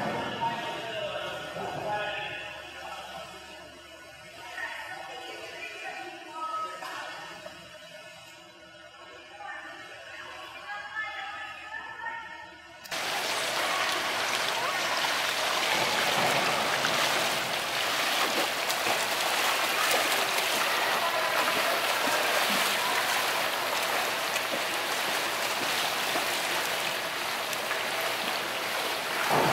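Steady splashing and churning of water from a swimmer in a pool, starting abruptly about halfway through and running on evenly.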